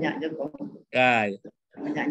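A man speaking, with a short, held vocal sound about a second in.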